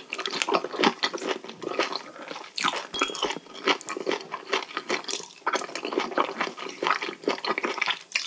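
Close-miked eating of raw sea cucumber intestines and sashimi: a dense, irregular run of wet chewing, lip smacks and slurps, with some crunchy bites. About three seconds in there is a brief clink.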